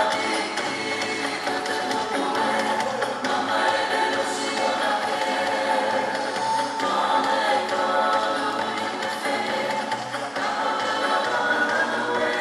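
A choir of voices singing a song together.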